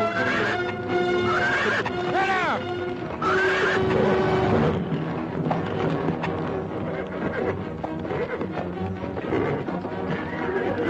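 A horse whinnying several times in the first four seconds, the longest whinny about two seconds in, over film score music.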